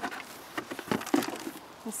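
Black plastic nursery pot being pulled off a hosta's root ball: scattered light rustles, scrapes and small knocks as the root ball slides free and soil crumbs drop onto a wooden tabletop.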